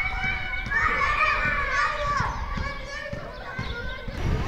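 A crowd of schoolchildren shouting and chattering at once, many high young voices overlapping, loudest in the first half.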